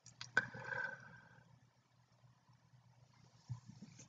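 Quiet room tone with a few faint clicks in the first half-second and a few more small ticks near the end.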